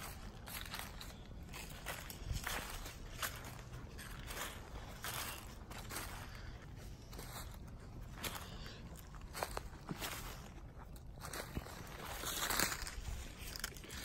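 Footsteps crunching through dry leaf litter on a forest floor, an irregular run of steps with a louder stretch near the end.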